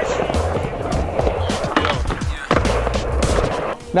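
Skateboard wheels rolling back and forth on a mini ramp, with a couple of sharp knocks of the board about two seconds in, over background music.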